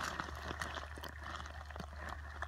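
Shallow creek water running, with scattered small clicks and knocks.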